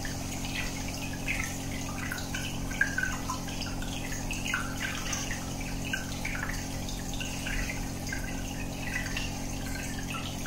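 Aquarium aeration bubbles breaking at the water surface in a continuous run of small splashes and drips, over a steady low hum.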